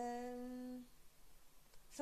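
A woman's voice holding a steady, level-pitched hesitation sound, a drawn-out "yyy" filler, for a little under a second, then a pause of room tone.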